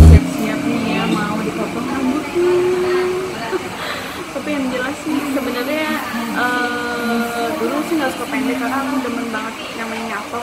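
Indistinct voices talking in a hair salon over a steady background hum.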